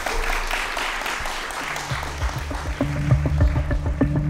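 Audience applauding, fading out as electronic music with a steady low beat comes in about halfway.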